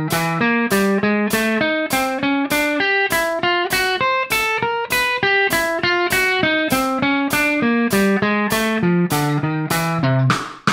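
Electric guitar playing a chromatic displacement drill: single notes picked at an even pace, stepping up and down the neck in small chromatic moves with both hands working together.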